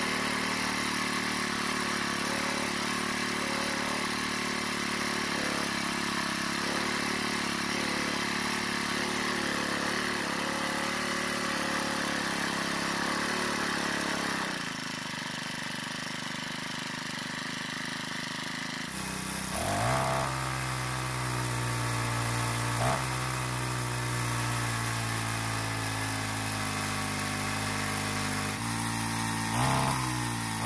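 Troy-Bilt edger's small four-stroke engine running at a fast idle while its idle speed screw is adjusted; the idle stays high because the throttle is hanging open. About two-thirds of the way in the engine speed rises sharply, then drifts slowly down.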